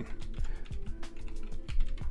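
Computer keyboard typing: a quick run of keystrokes.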